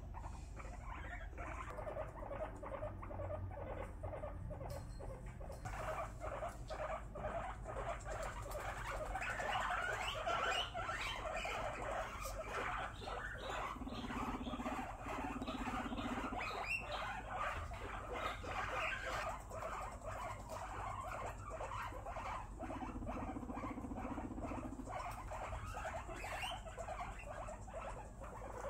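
Guinea pigs vocalising, a long run of rapid soft pulsed chatter, with two low buzzing rumbles of about two seconds each, one about fourteen seconds in and one about twenty-three seconds in. The rumbling comes as the pigs size each other up during a herd introduction, a dominance display.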